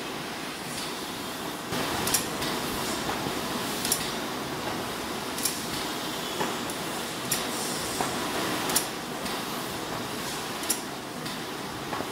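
Semi-automatic flute laminating machine (YB-1450BG) running, a steady mechanical noise broken by a sharp clack every second or two.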